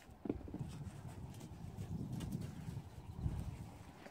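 Low, muffled thuds and shuffling of footsteps moving through deep snow, with handling noise on the recording phone.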